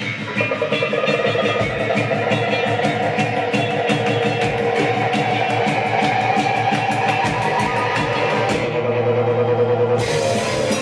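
Live rock band playing an instrumental passage: electric guitars, keyboard and drum kit, with a steady run of cymbal strokes. The cymbals stop about a second before the end while the guitars and keyboard carry on.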